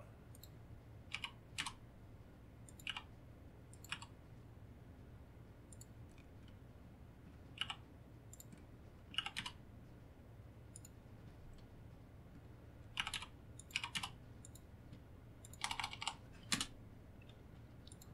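Scattered clicks from a computer keyboard and mouse: single clicks and short pairs or clusters every second or few, busiest in the last five seconds, over a faint low steady hum.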